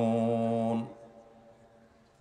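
A man's voice holding one long, level chanted note, a drawn-out syllable of Quranic recitation, heard through the lecture microphones. It cuts off just under a second in, leaving only faint room tone.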